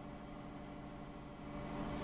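Faint steady background hum with a low, even drone.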